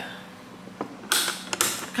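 Lid of an electric waffle maker being shut: a creak of the plastic hinge and clicks of the latch, with a short rush of noise just after one second.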